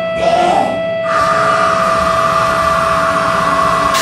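Electric guitar feedback through a stage amplifier: a steady high whine that jumps up in pitch about a second in and then holds, over amplifier hiss and hum.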